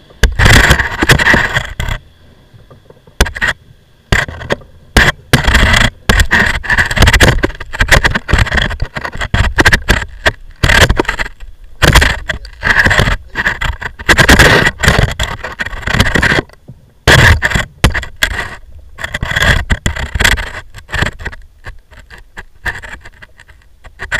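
Loud, irregular bursts of rushing, rubbing noise on the microphone, each lasting up to a couple of seconds with short quieter gaps between them; no engine is running.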